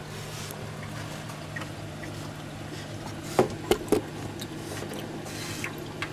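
Food being handled in a styrofoam takeout box: a few short clicks and soft squishes, clustered about three and a half to four seconds in, over a steady low hum.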